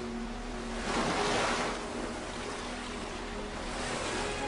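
Surf washing up a sandy beach: one wave surges in about a second in, swells to a hiss and eases off again, over a lower steady wash of the sea.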